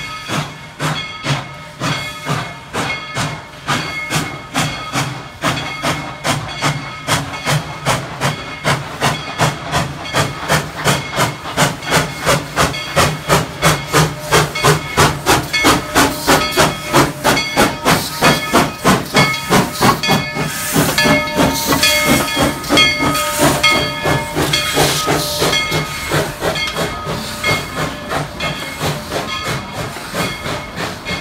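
Steam locomotive working out of the station, its exhaust chuffing in a rapid, even beat that grows louder as it draws near and passes, with steam hissing over it and a louder burst of hiss and tones about two-thirds of the way through.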